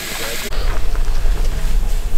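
Chorizo and egg sizzling in a frying pan on a two-burner camp stove, cut off after about half a second by a low wind rumble on the microphone.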